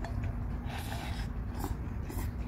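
A person eating noodles: mouth and chewing noises, with a short noisy sound just under a second in.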